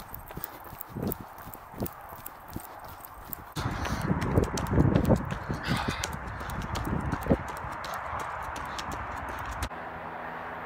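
Running footsteps on a dirt trail, sharp and regular at about three a second. About three and a half seconds in, a louder steady rushing noise joins, with irregular low thumps.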